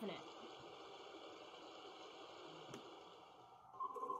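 Running-water sound effect from a Broadway Limited HO scale operating water tower, a steady soft hiss that stops about three and a half seconds in as the tower is shut off, with a single click shortly before.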